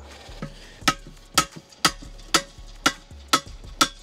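Seven sharp, evenly spaced knocks, about two a second, each with a short ringing tail.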